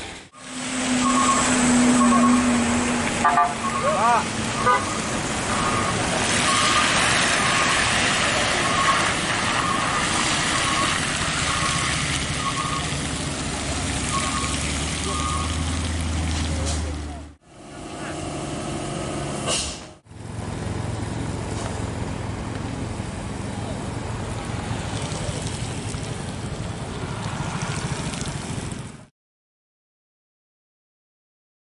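Jammed road traffic: vehicle engines running with a low rumble, short repeated beeps and toots from horns through the first half, and people's voices. The sound breaks off abruptly twice and stops about a second before the end.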